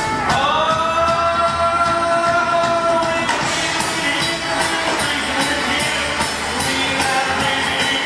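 Live rock band playing: electric guitars, bass and drums with male vocals. A long note is held for the first three seconds or so, and the band carries on after it.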